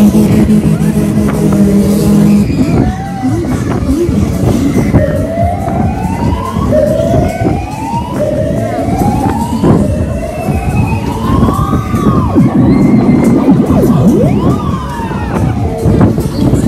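Loud funfair ride music and ride noise, with a string of siren-like rising wails: each climbs in pitch for a second or two and cuts back, four in a row from about a third of the way in and one more near the end.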